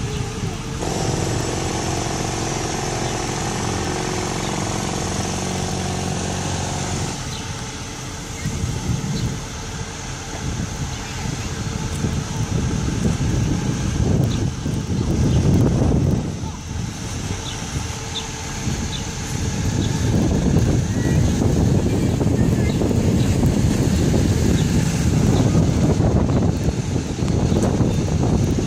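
International IC CE school bus driving up and stopping close by, its engine running throughout; the sound is loudest as it passes about halfway through and stays loud while it stands near the end.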